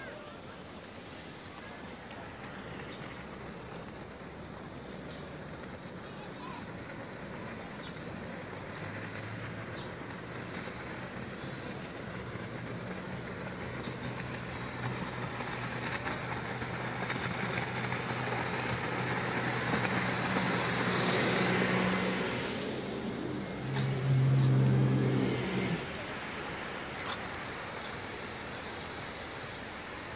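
Small motorboat's engine running as the boat travels along the river below, a steady low hum that grows louder, is loudest about 20 to 25 seconds in, then falls away.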